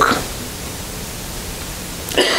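A steady, even hiss of room noise with no other sound in it.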